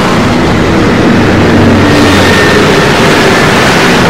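Sci-fi spaceship engine sound effect for a hovering flying saucer: a loud, steady mechanical rumble with a low hum and a faint high whine.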